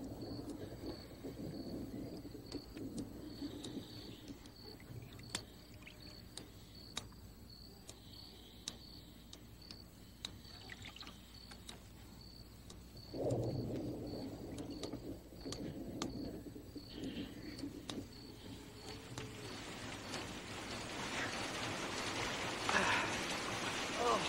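Night-time outdoor ambience with a high insect chirp, like crickets, repeating about twice a second, and a sleeper's low snoring at the start and again about halfway through. Rain begins in the last few seconds, a hiss that grows steadily louder.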